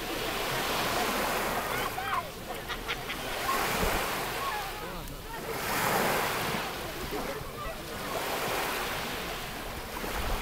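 Small sea waves washing and lapping, a steady wash that swells and fades every two to three seconds, with wind buffeting the microphone.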